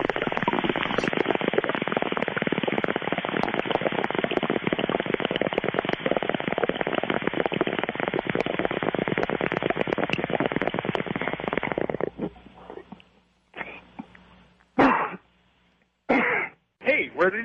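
Bong hit sound effect: a long, even gurgle of water bubbling through a bong that lasts about twelve seconds and cuts off suddenly, followed by two short bursts near the end.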